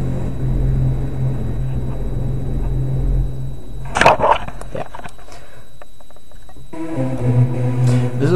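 Nexus software synth saw-lead patch played from a MIDI keyboard. A low held note sounds first, then there is a brief noisy burst about halfway, and another held note begins near the end.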